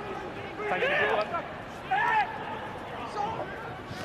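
Two short shouted calls from players on a rugby pitch, about a second in and again about two seconds in, over steady low ground noise.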